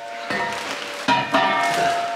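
Tin cans being set down inside a steel pasteurizer made from a gas cylinder: a knock about a third of a second in, then a louder clank just past a second that leaves a ringing metallic tone.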